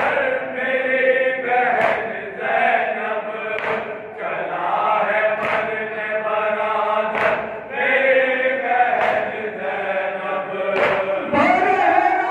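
A Shia noha chanted by a group of men in unison behind a lead singer on a microphone, with sharp chest-beating (matam) strokes about every two seconds keeping the beat.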